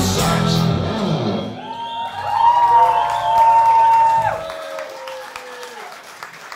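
A live rock band with violin ends a song. Drums and guitars stop about a second and a half in, leaving one long high held note that wavers, then slides down and fades out. Faint crowd noise remains underneath toward the end.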